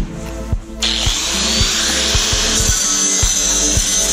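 Angle grinder grinding the edge of a plasma-cut steel sheet to remove cutting dross. It starts about a second in and runs as a steady, loud grinding noise with a high whine, over background music with a steady beat.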